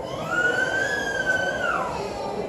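A child's high-pitched voice in one long squeal: it rises, holds for about a second and a half, then drops away near the end.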